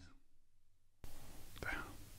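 A faint whisper over a low hiss that starts about a second in.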